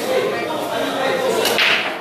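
Pool break shot: a sharp crack of the cue ball driven into the rack about one and a half seconds in, with a short clatter of scattering balls right after, over hall chatter.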